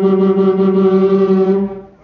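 A man's voice holding one long sung note at a steady pitch through the fairground PA, which fades away near the end.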